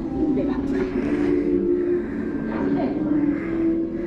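Indistinct voices and soundtrack audio from the exhibit's film screens, heard in a large gallery over a steady low hum.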